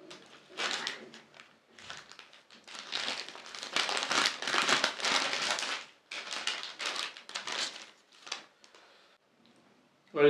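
Paper wrapper crinkling and tearing as it is peeled off a rolled chicken wrap, in irregular bursts for about eight seconds.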